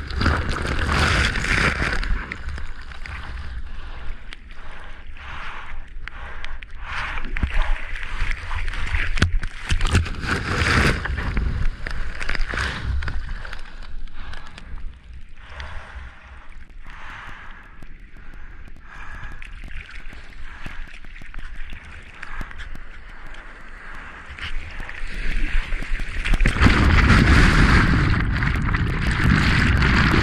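Seawater splashing and sloshing against a surfboard as a surfer paddles through choppy surf, in irregular splashes, with wind rumbling on the action camera's microphone. Near the end comes a longer, louder rush of water as whitewater from a breaking wave washes over the board.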